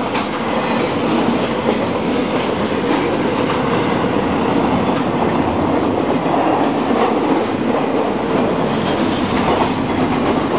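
Double-stack container freight train's well cars rolling past close by: a steady, loud noise of steel wheels running on the rails, with light clicks now and then.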